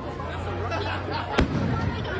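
A single aerial firework bursting with a sharp bang about one and a half seconds in, over a crowd of people talking.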